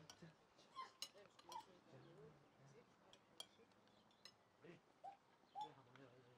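Faint, sharp clinks of cutlery against plates, several times, over quiet murmuring voices.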